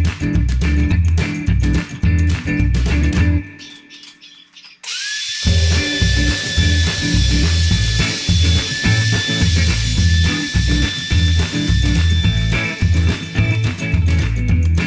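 Background music with a steady bass beat that briefly fades out. About five seconds in, an electric wood router starts with a short rising whine and then runs steadily at speed, high-pitched, under the returning music.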